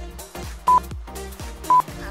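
Workout interval timer's countdown beeps: two short electronic beeps a second apart, marking the last seconds of an exercise interval. Background music with a steady beat plays underneath.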